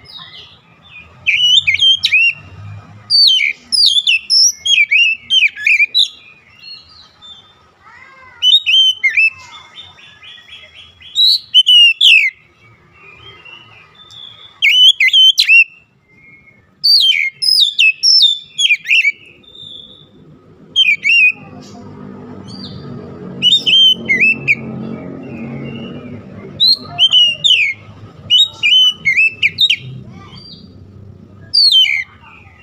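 Oriental magpie-robin singing: loud phrases of sharp, sliding whistles and chirps in quick bursts with short pauses between, including a fast trill about ten seconds in. A low rumble sits under the song from about 21 to 27 seconds.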